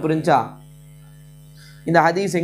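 A man's voice saying a short Arabic phrase at the start and again near the end, with a pause between. A steady low electrical hum runs under it.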